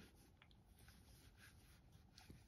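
Near silence, with faint soft rubbing of a crochet hook drawing yarn through stitches.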